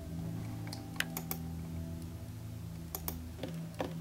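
A handful of short, scattered clicks from a computer keyboard and mouse, some in quick pairs, over a low steady music bed.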